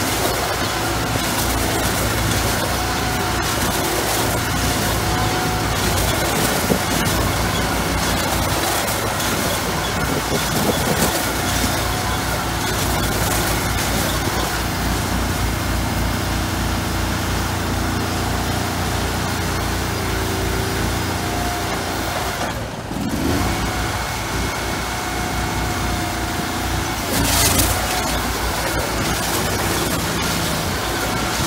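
Farm machinery engines running steadily: the small gas engine on an inline bale wrapper and a tracked skid-steer loader handling round bales.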